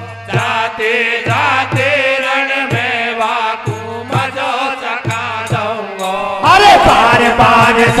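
Hari kirtan folk devotional music: a steady drone under a wavering melody line, over low drum strokes about once a second. About six and a half seconds in it turns louder and busier, with a quicker beat.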